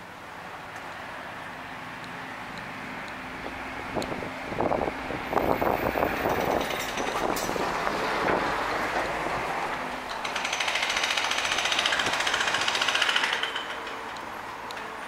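Street traffic passing: a vehicle goes by from about four seconds in, then a louder passing vehicle with a rapid buzzing pulse starts at about ten seconds and cuts off just before the end.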